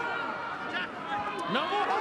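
Television rugby commentary: a male commentator's voice in short calls over a steady background haze of stadium noise.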